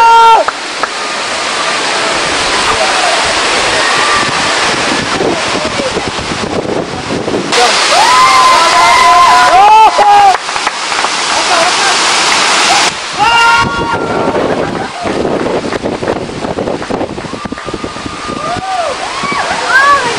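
Steady rush of a waterfall with wind buffeting the microphone, louder for a stretch in the middle. Short high shouts and shrieks come around 8 to 10 seconds in, again at about 13 seconds, and near the end, from a woman swinging out over the gorge on a rope swing.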